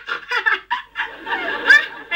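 A woman laughing hard, in short broken peals, heard from a television's speaker.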